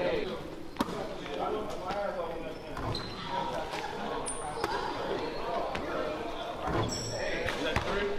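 Basketball bouncing on a hardwood gym floor in a few sharp, separate bounces, echoing in the hall, over the chatter of people's voices, with a couple of brief high squeaks.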